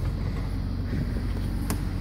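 Steady low mechanical hum with an even pulse from the Toyota Highlander while its rear liftgate is opened, and one sharp click near the end.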